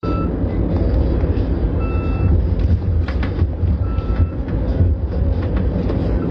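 Steady low rumble of a vehicle on the move, heard from inside the cabin, with two brief faint beeps.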